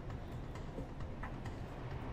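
Faint irregular clicks or taps, about two a second, over a low steady rumble.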